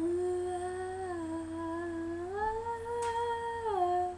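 A girl humming a slow wordless melody, unaccompanied. She holds one note, dips slightly about a second in, rises to a higher held note a little past two seconds, and falls back near the end.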